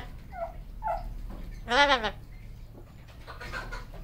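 Amazon parrot with a plucked chest giving one drawn-out, cry-like call that rises and falls in pitch about two seconds in, after a few faint short calls.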